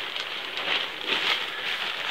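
Nylon-type tent fly sheet rustling and crinkling steadily as it is handled and unfolded by hand.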